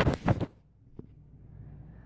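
Two quick knocks with rustling in the first half second, then a low steady room hum with one faint click about a second in.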